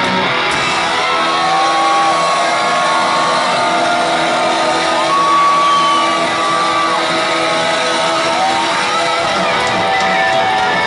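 Hard rock band playing live in a hall, led by electric guitars, with long held lead notes sustained over the band.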